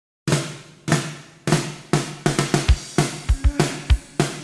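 Drum kit opening a song: after a brief silence, loud ringing hits about every half second, then from about halfway a faster beat with the bass drum coming in. A few pitched instrument notes join near the end.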